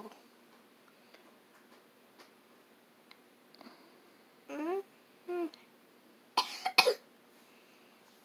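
A person who is sick coughing: a short, sharp burst of coughs about six and a half seconds in.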